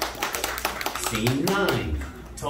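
Scattered hand clapping from an audience, the last of a round of applause, with voices coming in near the end.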